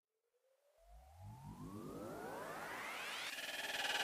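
Electronic music riser: a synthesized sweep that climbs smoothly and steadily in pitch, with a low rumble under it, starting faint and growing louder toward the end.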